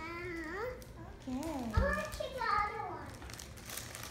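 A young child's high voice in sing-song glides, without clear words, with some paper crinkling and a short thump about halfway through.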